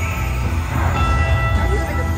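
Buffalo Gold slot machine game sounds during a bonus: a chord of steady electronic tones starts about a second in as the X2 multiplier is shown, over a steady low casino-floor rumble.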